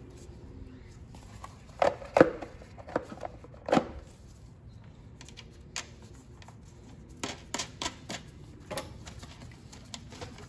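Sharp clicks and clacks of hand tools and hardware being handled as a carburetor install is finished. A cluster comes about two to four seconds in, the loudest near two seconds, with scattered single clicks later.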